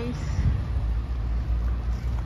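Low steady rumble of nearby road traffic.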